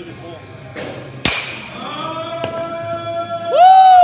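A baseball bat hitting a pitched ball about a second in: one sharp crack. A smaller knock follows about a second later. Near the end a loud held musical tone starts over background music and chatter.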